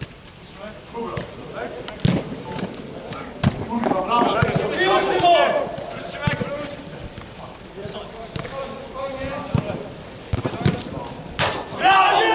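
A football being kicked during play: several sharp thuds, loudest about two seconds in and again near the end, in a reverberant air-dome hall. Players shout and call to each other between the kicks.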